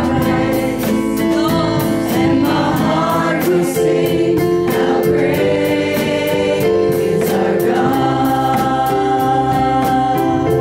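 A small group of singers singing a gospel worship song together into microphones, over backing music with a steady beat.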